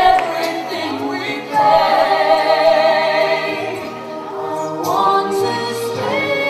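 A recorded pop ballad duet: a singing voice holds long notes with vibrato over steady backing, sweeping up to a new note about five seconds in.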